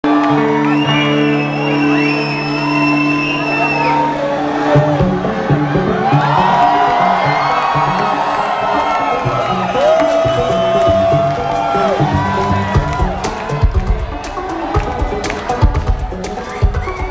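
Live rock-electronica band through a concert PA, recorded from within the crowd: a held chord opens, a pulsing beat comes in about five seconds in, and a heavy drum beat starts near the end. The crowd cheers and whoops over the music.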